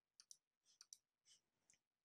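Several faint computer mouse clicks, a few in quick pairs, over near silence.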